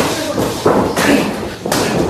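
Sharp impacts in a wrestling ring, about four hits in two seconds, with voices shouting between them in a large hall.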